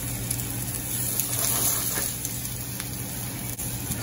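Portobello mushrooms and red and yellow bell peppers sizzling steadily in olive oil in a sauté pan over a gas burner, with a steady low hum beneath.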